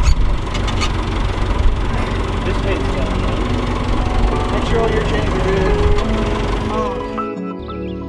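Tractor engine idling, a steady low rumble, with faint voices over it; about seven seconds in the rumble cuts off and music takes over.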